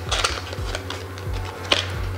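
Light clicks and rustles of a packaging insert being handled as a lavalier microphone and its cable are pulled out, a sharper click near the end, over soft background music.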